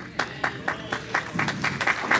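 Congregation applauding: scattered, uneven hand claps from a small number of people.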